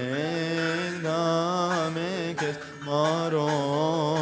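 A male voice chanting a Coptic liturgical hymn into a microphone: slow, drawn-out notes that waver and ornament around the pitch, with a brief breath-pause about two and a half seconds in.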